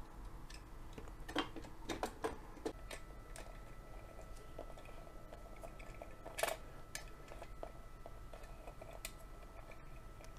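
A few faint, light clicks and taps from a 1:43 scale model of a VAZ-2102 fire-service estate car being handled, its small hinged panels moved by hand; the sharpest click comes a little past halfway. A faint steady high tone sits underneath.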